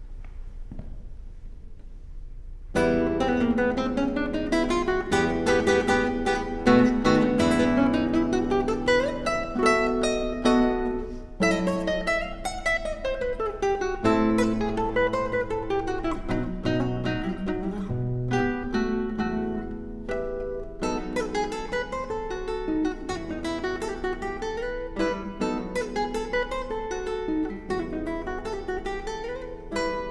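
Solo classical guitar, its nylon strings plucked, starting a piece about three seconds in after a short quiet and playing a moving melody over bass notes.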